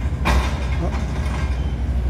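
Wind buffeting the phone's microphone as a low, fluctuating rumble, with a brief rushing gust about a quarter second in.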